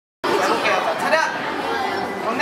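Indistinct chatter of several voices in a large indoor hall, starting a split second in after silence.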